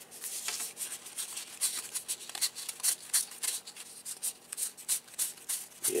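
2021 Topps Gypsy Queen baseball cards being leafed through one by one in the hands, a quick irregular run of papery flicks and slides of card on card.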